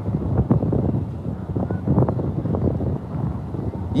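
Wind rumbling unevenly on a phone microphone, with a few faint clicks.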